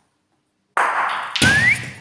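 A bocce ball comes in and runs loudly over the court surface, then strikes another ball with a sharp, heavy knock about a second and a half in, knocking it away. A brief rising whistle-like tone follows the hit.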